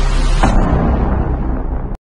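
Cinematic boom sound effect ending a channel logo sting: a sharp impact about half a second in over a heavy low rumble, the high end fading away. It cuts off abruptly just before the end.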